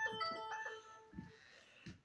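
A short electronic chime: a few clear, high notes in quick succession that ring and fade out within about a second.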